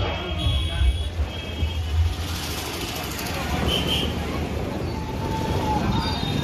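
Street noise of motorbikes and other traffic with people's voices, over loudspeaker music whose heavy bass carries on for the first couple of seconds and then drops away.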